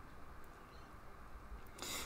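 Very quiet pause: faint room tone with a low steady hum, and no distinct sound events.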